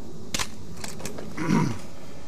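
A sharp click, then two fainter clicks, followed by a short, low human vocal sound that falls in pitch, such as a brief grunt or laugh, about three quarters of the way in.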